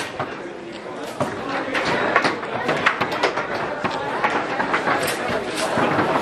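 Many sharp clacks and knocks from foosball tables in play, balls and rods striking hard, scattered irregularly over the steady chatter of a crowd in a large hall.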